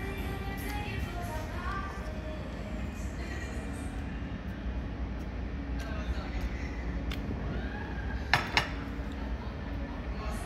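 Background music and voices over a steady low rumble of room noise, with two sharp clinks of a ceramic plate and its utensils about eight seconds in.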